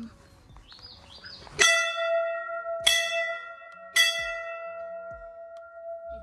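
A hanging brass temple bell struck three times, about a second and a quarter apart. Each strike rings on at one steady pitch and overlaps the next.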